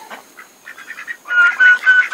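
A bird calling a short run of about four quick notes on one high pitch, starting a little past halfway.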